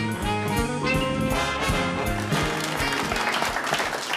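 Brass-led band music playing a lively show theme, fading into applause near the end.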